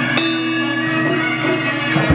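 Traditional Vietnamese temple ritual music: a reed wind instrument plays sustained notes, and a bell is struck once just after the start and rings on.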